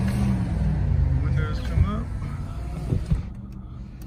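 Low, steady hum of a 2010 Lexus IS250C's 2.5-litre V6 idling, heard inside the closed cabin; it fades after about a second and a half.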